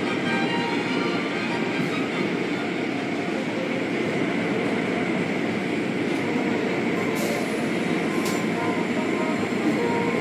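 Automatic car wash running over the car, heard from inside the cabin: water spray and cloth brushes make a steady rushing noise.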